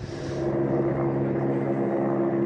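Helicopter droning at a steady, unchanging pitch.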